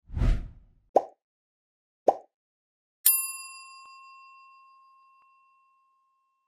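Sound effects for an animated subscribe button: a short whoosh, then two quick pops about a second apart, then a single bright notification-bell ding about three seconds in that rings on and fades away over the last three seconds.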